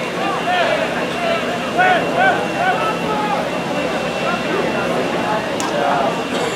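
Several voices calling and shouting over one another with no clear words, from players and people on the sideline, with a sharp click near the end.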